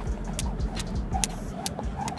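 Skipping rope slapping an asphalt court in a steady rhythm, about three sharp ticks a second, as the jumper skips through crossovers.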